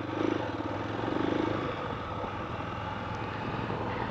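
Honda motorcycle engine, a new engine being run in, running at low, steady revs while riding. It swells slightly during the first second and a half, then holds steady.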